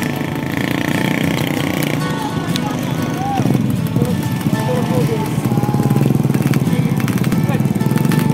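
Small motorcycle and scooter engines running together, getting louder in the second half, with voices calling out over them.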